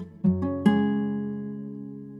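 A sampled guitar loop playing back in a beat: plucked notes and chords ringing out and fading, with a fresh chord struck about two thirds of a second in.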